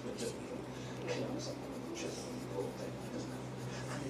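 Colored pencil scratching across notebook paper in short, irregular back-and-forth shading strokes, over a low steady hum.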